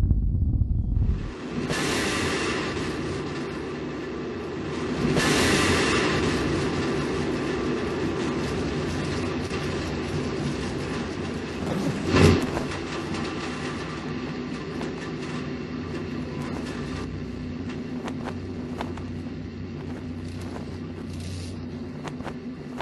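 Sound effects of a space capsule's re-entry and parachute descent: a heavy low rumble that drops away about a second in, then a rushing roar over a steady hum, swelling twice in the first six seconds. A single sharp thump comes about twelve seconds in, as the parachutes deploy, and the roar then slowly fades.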